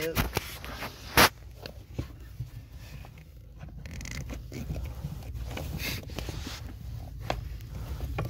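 Scraping, rubbing and sharp clicks of a stubborn plastic carpet-retaining clip in a car footwell being pried at by hand, with one loud snap-like click about a second in.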